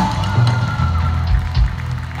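Live rock band playing an instrumental passage with no vocals: bass guitar and drums, with a single guitar note held for about a second and kick-drum thumps in the second half.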